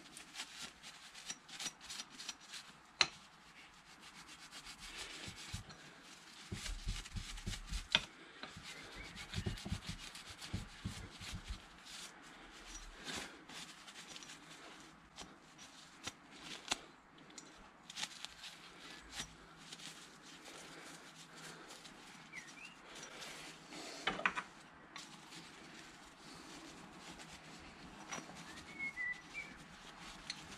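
A cloth rag rubbing and wiping small, greasy metal parts of a motorcycle gear-shift toe peg, faint and irregular, with occasional light clicks as the parts are handled.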